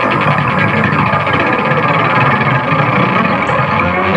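Live electronic synthesizer music: a dense, noisy, steady texture at an even level.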